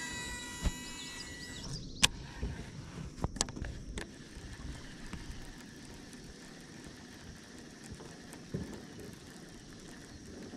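Sharp clicks from a baitcasting reel being handled, the loudest about two seconds in and a few more up to about four seconds in, with a high ringing tone that fades out in the first second and a half.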